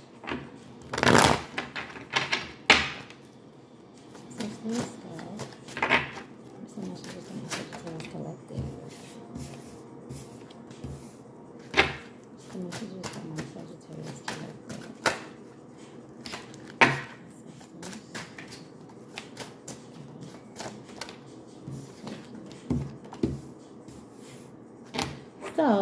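A tarot deck being shuffled by hand, overhand style: cards sliding and slapping against each other with irregular sharp taps, a few of them louder than the rest.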